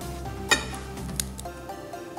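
Background music, with two sharp clicks of a knife cutting through a green chilli held in the hand, about half a second in and again just over a second in.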